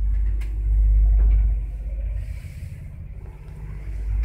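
ZUD passenger lift running in its shaft: a low rumble that swells about a second in and eases off after about two seconds, over a faint steady hum.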